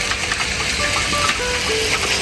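Beef frying on a hot pan, a steady sizzle, under background music of a few short held notes.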